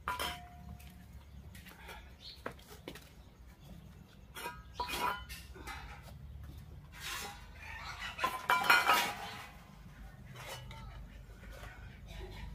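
Stainless steel plates, bowls and serving spoons clinking and clattering as food is served out, in scattered knocks, with the loudest clatter about three quarters of the way through.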